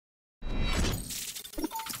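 Logo intro sound effect: a sudden crash, like something shattering, hits about half a second in out of silence, then trails off in a noisy, shimmering tail mixed with music.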